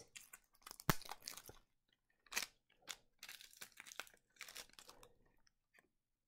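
Small cosmetic product packaging being handled close by. There is a sharp click about a second in, then scattered crinkles and rustles.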